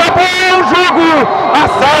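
Speech only: a male sports commentator calling the result loudly.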